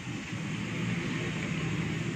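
Steady low background hum and noise with no distinct events.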